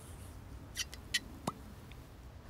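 The stopper of a glass tequila bottle being twisted out, giving a few faint short squeaks and clicks, with one quick rising squeak about halfway through.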